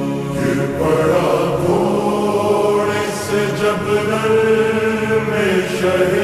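Urdu noha (Shia lament), slowed down and heavily reverbed: a chanted vocal line with long held notes. A steady held tone at the start gives way to the voice about half a second in.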